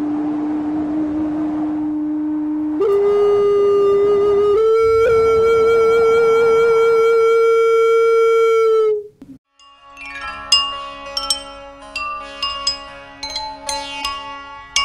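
A Chinese xun, a ceramic vessel flute, playing three long breathy notes, each higher than the last, the third held until it stops about nine seconds in. After a brief gap, a jal tarang's porcelain bowls, tuned with water, are struck with thin sticks in a quick run of ringing notes.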